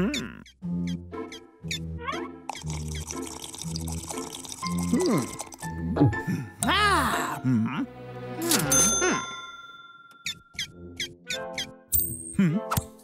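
Bouncy cartoon background music with a steady beat, under wordless character vocal sounds (hums and grunts that rise and fall in pitch) and a few short cartoon sound effects.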